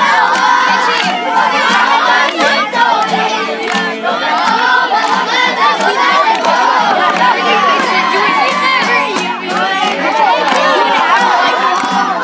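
A group of children shouting together, many voices overlapping, over a strummed acoustic guitar.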